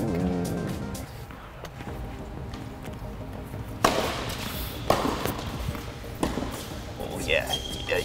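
A tennis rally on an indoor hard court: sharp racket hits and ball bounces about four seconds in, again a second later and once more about a second after that, with short high squeaks near the end.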